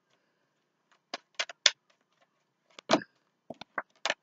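A tarot card deck shuffled in the hands: short, crisp card clicks and snaps in small clusters with pauses between, the strongest just before three seconds in.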